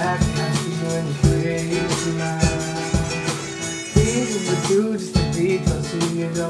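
Guitar chords strummed in a reggae-style rhythm, a rough first run-through of a new song, with a voice singing along in places.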